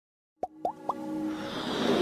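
Logo intro sting: three quick rising blips, then held tones under a swelling rush of noise that builds toward the end, leading into electronic music.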